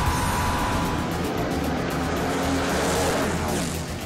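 Supercharged nitro funny car engine running hard during a drag-racing pass, a loud, dense roar with background music underneath. It eases slightly near the end.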